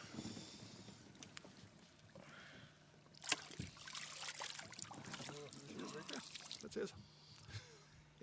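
Water splashing and sloshing beside a small fishing boat, with a sharp knock a little over three seconds in, under low, indistinct voices.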